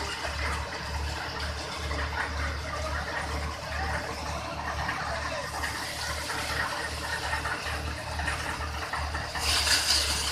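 Mahindra paddy thresher running: steady machine noise over a low throb that pulses about twice a second, with a burst of higher hiss near the end.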